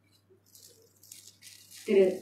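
Faint, irregular rustling and crackling, like things being handled close to a microphone, growing toward the end and cut off by a brief loud burst just before the end.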